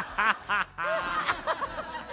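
A man and a woman laughing together in several short bursts.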